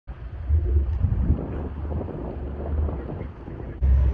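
Outdoor roadside ambience: an uneven low rumble of wind buffeting the microphone under a steady noisy background, with a cut to a louder rumble near the end.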